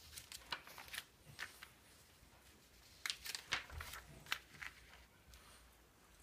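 Pages of a glossy magazine being turned and handled: two short spells of paper rustling and flicking, one just after the start and one about three seconds in.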